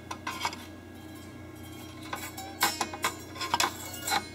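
Thin stainless corona wire in a KX-PDM1 laser-printer drum unit plucked several times with a screwdriver tip, each pluck a short metallic ping. The wire is stretched so tight that it rings like a musical instrument string.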